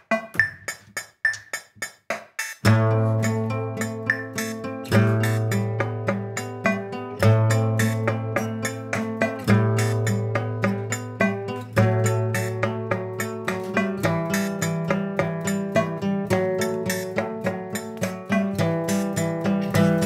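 Live indie band playing a song: quick repeated picked notes, joined about three seconds in by a low held chord that changes every two seconds or so beneath them.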